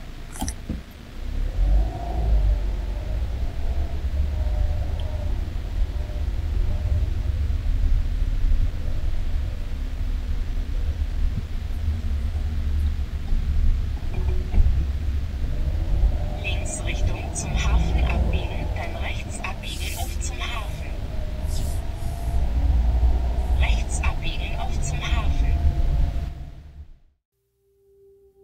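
Wind buffeting the microphone outdoors: a steady, uneven low rumble. From about two thirds of the way in, faint voices and short high chirps sound over it.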